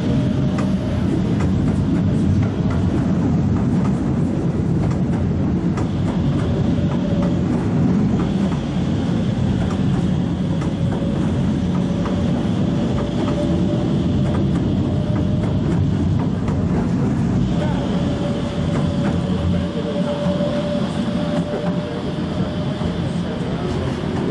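Vienna U-Bahn trains running along the U4 line: a steady rumble of wheels on rail, with many small clicks. A thin whine comes and goes over it.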